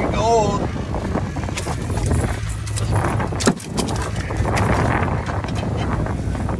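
Knocks and rattles on a boat deck as a walleye is landed in a landing net, over a steady low boat engine hum and wind on the microphone, with a sharp knock a little past halfway. A brief wavering voice cry comes just after the start.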